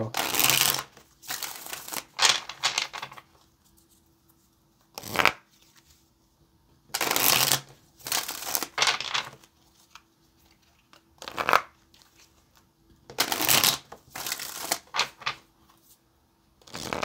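A deck of tarot cards being shuffled by hand, in short bursts of sliding and flicking cards with brief quiet pauses between them.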